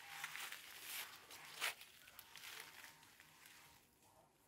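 Faint rustling and light crackles, one slightly louder about one and a half seconds in, fading to near silence for the last second.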